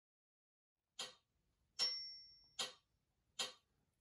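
Metronome clicking at 75 beats per minute as a count-in: four evenly spaced clicks, the second with a brief ringing tone.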